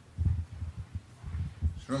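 Irregular low thumps and rumbles of handling noise on a microphone, as it is passed to or picked up by an audience questioner.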